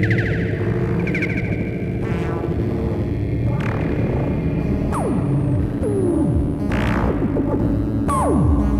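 Dark ambient electronic music: layered synthesizer drones, with several falling pitch sweeps and short high chirps from about five seconds in.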